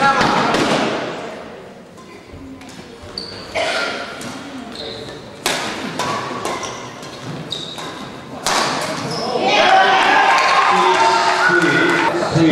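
Badminton rally in a large, echoing hall: sharp racket strikes on the shuttlecock a few seconds apart, with short high squeaks of shoes on the court between them. Spectators' voices swell near the end.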